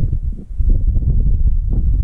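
Wind buffeting the microphone: a loud, gusting low rumble that drops away briefly about half a second in.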